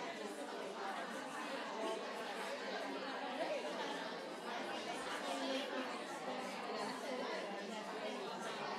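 An audience talking among themselves in pairs and small groups: many overlapping voices in a steady hubbub.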